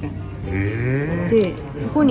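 A man's long, drawn-out vocal exclamation that rises and bends in pitch over about a second, with speech resuming near the end.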